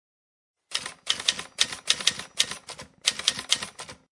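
Intro sound effect of sharp clicking strokes, like keys being struck: about a dozen at an uneven pace of roughly three a second, starting a little under a second in.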